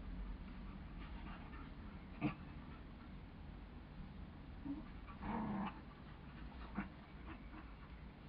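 Two border collies play-fighting, their vocal sounds coming in short bursts: a sharp one about two seconds in, the loudest moment, and a longer, louder one a little past halfway.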